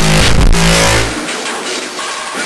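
Distorted trap instrumental at 168 bpm: heavy distorted 808 bass notes under a harsh distorted wash, then the bass drops out about a second in, leaving only the quieter upper part of the beat.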